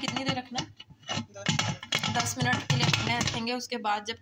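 A woman speaking, with a few light clicks.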